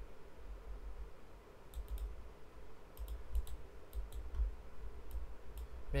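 Computer mouse clicking while a chart is worked on screen: scattered sharp clicks, a quick cluster about two seconds in and a few more later, over a low, uneven rumble.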